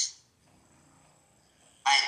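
Short bursts of a person's voice: one fades out at the start and another begins near the end, with a quiet gap in between.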